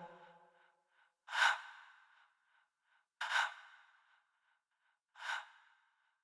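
Three quiet, short breaths about two seconds apart, each dying away within half a second.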